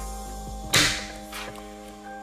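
Soft background music with steady held notes. Just under a second in comes a short, sharp swishing noise, and a fainter one follows about half a second later.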